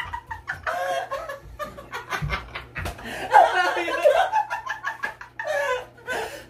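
Two men laughing and talking after a blown vocal take, with a couple of low thumps near the middle.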